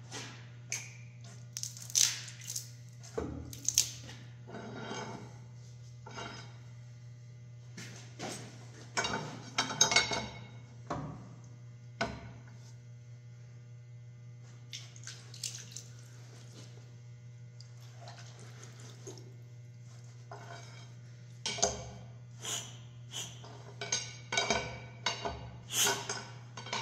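Metal wrench clanking and clicking against a locked-up Kia four-cylinder diesel engine as it is barred over by hand, in scattered bursts with pauses between. The engine is seized, with rust in one cylinder soaked in an ATF and xylene penetrant. A steady low hum runs underneath.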